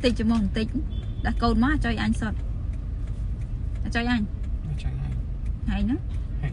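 A woman's voice in short phrases, over the steady low rumble inside a car.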